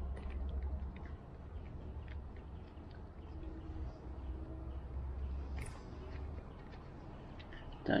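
Fingers taking an anode cover bolt out of the outboard's block by hand: faint small clicks over a steady low rumble of handling noise, with one sharper click about six seconds in.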